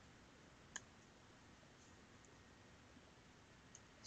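Near silence: quiet room tone with one faint short click a little under a second in.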